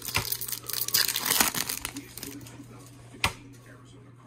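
Foil wrapper of a Topps baseball card pack being torn open and crinkled, a dense crackling for about two and a half seconds that then dies away. A single sharp click comes a little after three seconds in.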